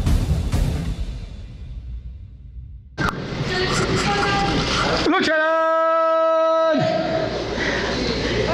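An intro sound effect's boom and whoosh dying away, then an abrupt cut to the hubbub of a wrestling venue. About two seconds after the cut, one long tone is held for about a second and a half.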